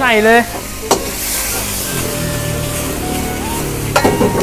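Bean sprouts stir-frying in a hot steel wok: a sharp metal tap of the ladle about a second in, then a louder burst of sizzling that settles into a steady sizzle.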